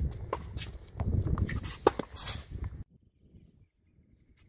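Tennis ball knocking off racket strings and a hard court a few times, the loudest knock about two seconds in, over wind rumbling on the microphone. The sound drops away abruptly near three seconds in.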